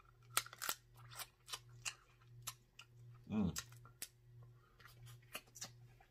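Close-miked eating of snow crab: chewing and lip smacking heard as a string of sharp, wet clicks, with a hummed "mmm" about three seconds in. A faint steady low hum runs underneath.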